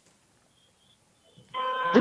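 Near silence on the live link for about a second and a half, then a man's voice comes in with a long, steady 'jee' as the reporter begins to answer.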